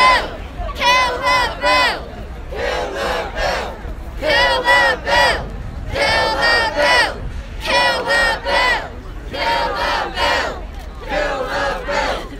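A protest crowd chanting a short slogan in unison, shouted again and again in groups of three or four syllables about every one and a half to two seconds.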